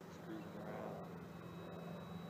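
Faint, steady drone of a distant FMS Corsair electric RC warbird's motor and propeller in flight, with a thin high whine over it.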